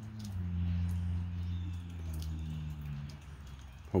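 A low, steady machine hum that steps down slightly in pitch and grows louder about a third of a second in, then fades out shortly before the end.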